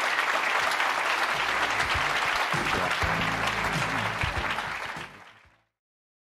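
Audience applauding, with music coming in under it about a second and a half in. Both fade out near the end.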